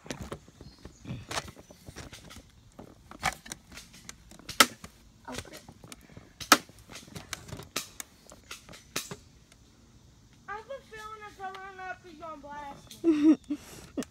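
Airsoft gunfire: about eight or nine sharp, irregular cracks of shots and BBs striking over the first nine seconds. A person's voice follows near the end.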